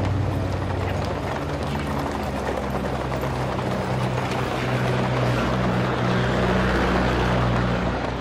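A vehicle engine running with a steady low hum under a broad, continuous rumble of motion on a dirt street, growing louder about halfway through.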